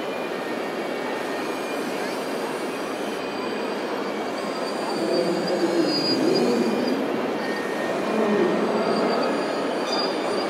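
High electric whine of the hydraulic pumps and drive motors on radio-controlled scale excavators (a Liebherr 926 compact model among them) as they dig and load soil into a tipper trailer. The whine sits over a steady rushing hall background, and everything grows louder about halfway through.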